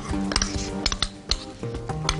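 A metal spoon clinking a few times against a ceramic bowl and a glass mixing bowl as honey is scraped out, over background music.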